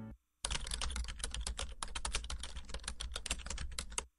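Fast typing on a computer keyboard: a dense, uneven run of keystroke clicks that starts about half a second in and stops abruptly at the end.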